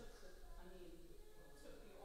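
Faint, indistinct voices talking.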